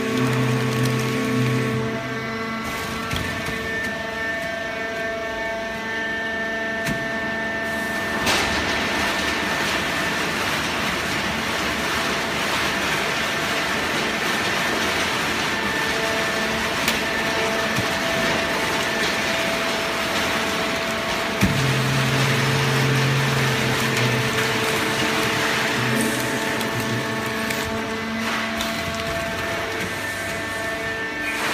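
Fully automatic horizontal waste-paper baling press running: a steady mechanical hum with several held tones. About a quarter of the way in, a broad rushing noise joins and carries on through most of the rest, and a low hum comes back for a few seconds past the middle.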